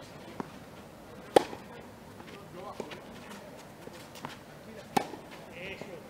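Tennis ball struck by rackets during a baseline rally, each hit a sharp pop. Two loud hits come about a second and a half in and about five seconds in, with fainter hits and bounces from the far end between them.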